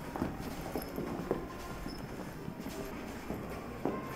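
Footsteps of people walking on a hard polished stone floor, about two steps a second.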